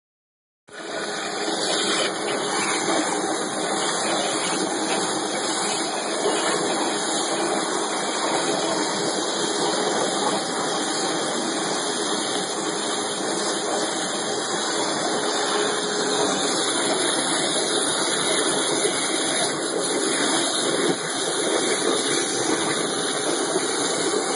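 Waterjet cutter's high-pressure jet cutting a sheet on the water-filled cutting table: a steady, unbroken hiss and rush of water.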